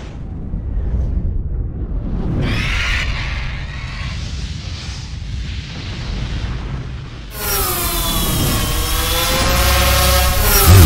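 Produced intro sound design: a deep rumble with booms and whooshing sweeps. About seven seconds in, a sudden loud, bright wash of wavering tones bends up and down and swells toward the end.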